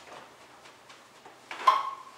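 Wet string mop being pushed over a bare concrete floor, a faint rubbing with a few light knocks, then a loud short squeak about one and a half seconds in.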